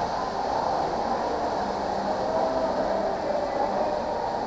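Steady background noise of a large, high-ceilinged lodge lobby: an even hiss with a faint steady hum through the middle.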